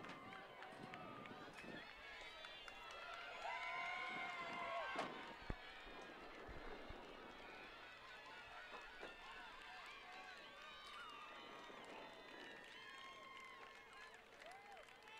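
Faint crowd of track-meet spectators talking and shouting, with the voices rising louder about three to five seconds in, and a single sharp crack about five and a half seconds in.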